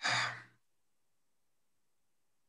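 A man's short, breathy sigh of about half a second.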